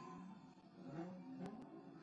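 Faint, garbled wavering tones from a ghost-box app scanning for spirit voices, with two sharp clicks about one and a half seconds in.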